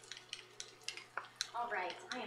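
A wooden spoon stirring fried rice in a pan, with scattered light clicks and scrapes of the spoon against the pan.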